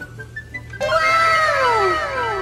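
Background music, and a little under a second in, a loud added sound effect: a drawn-out call that falls in pitch, repeated in overlapping echoes.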